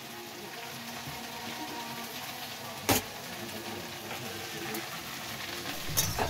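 Chopped vegetables frying in a steel wok on a gas stove, a steady sizzle, with one sharp click about three seconds in.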